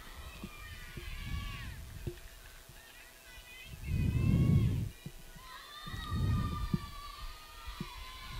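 Distant high-pitched voices of softball players and spectators calling out and chanting, several at once, over rumbles of wind on the microphone; the loudest wind rumble comes about four seconds in, with a few faint clicks here and there.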